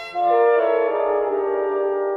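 French horn playing a loud phrase of several sustained notes in classical chamber music. It enters just after the start, once the violin line has stopped.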